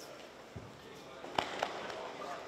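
Two sharp hand claps or slaps about a quarter second apart, the loudest sounds here, over faint murmur of a sports hall, with a soft low thud on the mat about half a second in.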